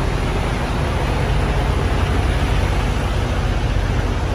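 Diesel semi-truck engine idling close by, a steady low rumble.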